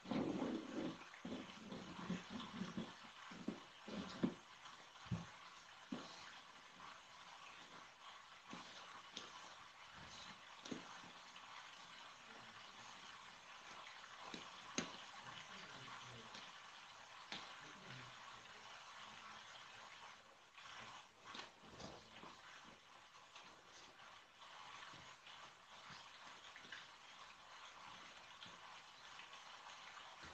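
Quiet room hiss with scattered light taps, knocks and rubbing of cardboard panels being handled and pressed, busier in the first few seconds.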